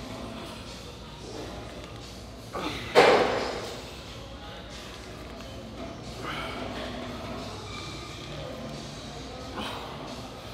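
A single loud thud about three seconds in, the impact of gym equipment, heard over faint background music.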